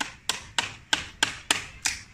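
A metal blade chopping at the tip of a bantigue bonsai branch, seven sharp knocks of steel into wood at a steady pace of about three a second.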